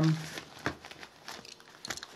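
Rustling and light clicks of a nylon waist pouch being handled as an item is put back into it, in a few short scattered bursts.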